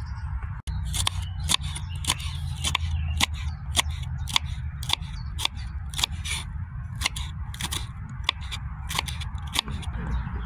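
Kitchen knife slicing green chili peppers on a wooden chopping board: a steady run of crisp cuts, about three a second, over a low steady hum.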